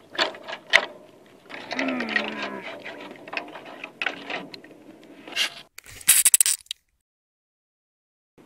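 A voice groans, falling in pitch, amid scattered small clicks and clinks. Near the end a short, loud burst of hissing noise cuts off abruptly into silence.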